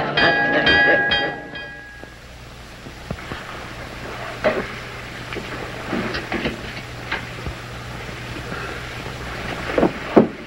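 A sustained orchestral chord on the soundtrack, held for about two seconds and then cut off. After it comes low film hum and hiss with a few faint short sounds as a man stirs awake on a bed.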